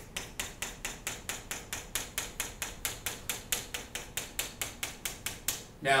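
Chalk tapping on a chalkboard as a row of short tick marks is drawn quickly, a steady run of sharp clicks about five a second that stops shortly before the end.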